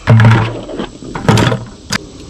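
Hand tools being dropped into a bucket: two loud clunks about a second apart, then a sharp click near the end.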